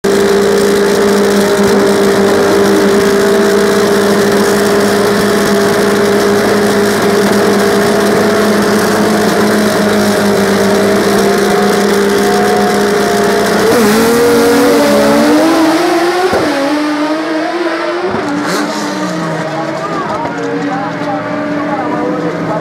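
Two drag-race cars' engines held at steady high revs on the start line, then launched about fourteen seconds in, the pitch climbing and dropping back with each gear change as the sound fades with the cars pulling away down the strip.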